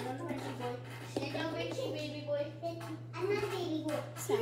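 A girl talking in a small room, her words unclear, over a steady low hum.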